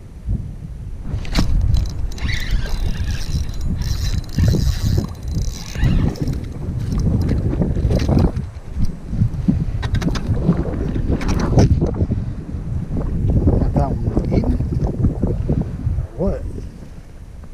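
Strong gusting wind buffeting the microphone, a heavy rumble that rises and falls, with scattered knocks and rustles of handling.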